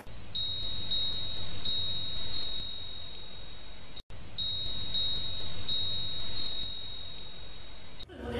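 A steady high-pitched electronic tone, broken off for a moment halfway through, with faint scattered ticks over a low hum.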